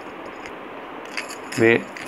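A man's speech into a microphone stops for about a second and a half, leaving a faint room hiss, then resumes with one short syllable near the end.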